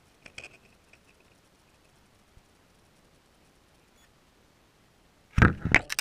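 Water heard from inside a GoPro's waterproof housing floating as a bobber: faint for most of the time, with a few light clicks about half a second in. Near the end comes a loud, sudden burst of splashing and knocking as the float is pulled through the water.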